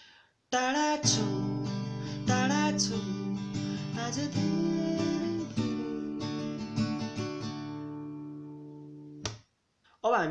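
Italina acoustic guitar strumming chords: a run of strums starting about half a second in, then the last chord left ringing and fading until it cuts off abruptly near the end.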